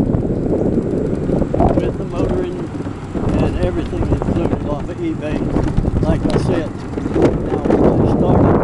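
Wind buffeting the microphone of a camera riding in the sidecar of a moving electric scooter, a steady rumbling noise throughout, with indistinct talking underneath in the middle of the stretch.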